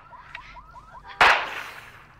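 A single sudden loud bang about a second in, fading quickly, on a voicemail recording: the sound taken for a gunshot. Faint rapid chirps come before it.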